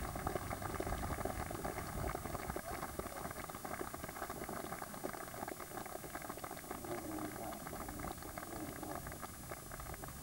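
Cricket spectators clapping: a dense patter of applause that eases off a little towards the end.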